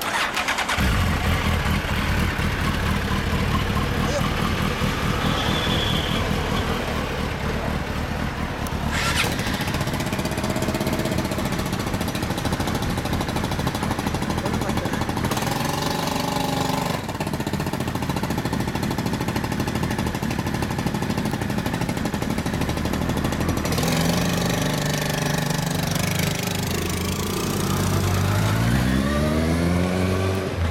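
Suzuki GSX1300R Hayabusa's inline-four engine through a WR'S titanium slip-on muffler. It comes on suddenly about half a second in and runs at a steady idle, with a few changes in revs. Near the end the revs rise steadily as the bike pulls away.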